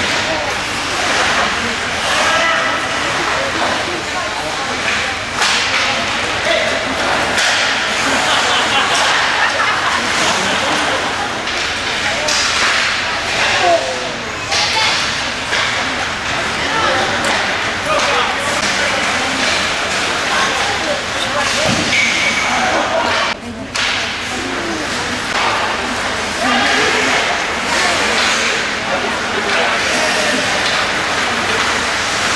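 Ice hockey game play in a rink: skates scraping the ice and sticks and puck clacking, with repeated sharp hits and thuds and players' and spectators' voices.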